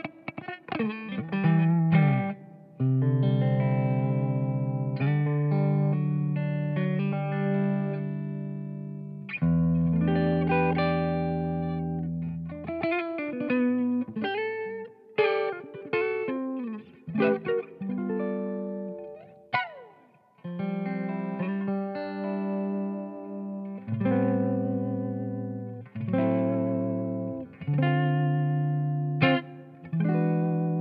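Clean electric guitar, a Rivolta Combinata XVII on its neck P90 pickup, played through a Fender-style Ceriatone OTS Mini 20 amp. Chords are left to ring for a second or more, with picked single-note runs and strums between them. The tone is not too dark for a neck P90.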